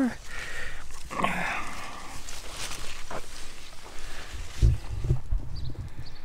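Faint animal calls over outdoor background noise, with a few low footstep thumps toward the end.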